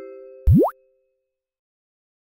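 Audio logo sting of an animated outro: the last chime notes of the jingle ring out and fade, then about half a second in a short 'plop' sound effect sweeps quickly up in pitch and cuts off.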